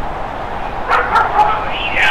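Strong wind rushing over the microphone, a steady noise, with short high-pitched cries about a second in and again near the end.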